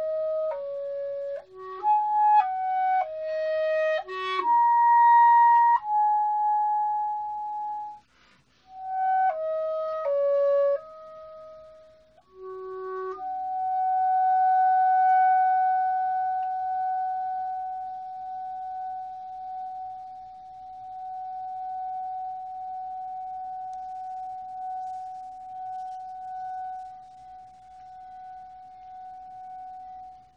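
Unaccompanied clarinet playing a slow melody of held notes, with a short break about eight seconds in. From about thirteen seconds it holds one long high note that swells and then slowly fades out near the end.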